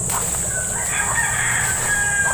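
A rooster crowing: one long, drawn-out crow starting about half a second in.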